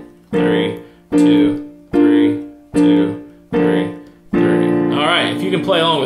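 Yamaha digital piano playing a B flat major triad through its inversions with the left hand: six block chords struck about 0.8 s apart, each dying away before the next, the last one held. A man's voice starts over the held chord near the end.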